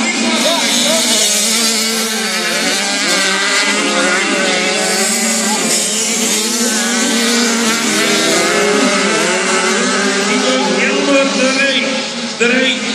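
Several 85cc two-stroke racing motorcycles at full throttle on a grasstrack oval, their engines rising and falling in pitch as the riders accelerate, back off and slide through the bends.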